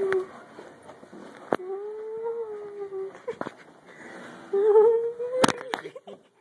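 A person's voice humming three long, wavering notes, each about a second and a half, with a sharp knock near the end.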